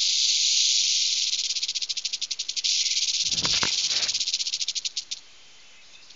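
Cockatiel giving an angry, rattling hiss with its beak wide open, a fast run of dry pulses like a rattlesnake's rattle. A short lower sound breaks in about three and a half seconds in, and the rattle stops about five seconds in.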